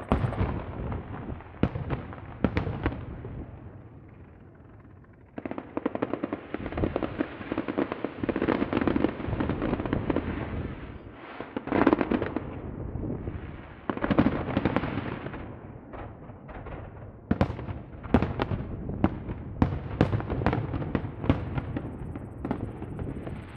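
Aerial fireworks display: shells bursting with sharp bangs, then long stretches of dense rapid crackling from about five seconds in. A run of separate loud bangs fills the last few seconds.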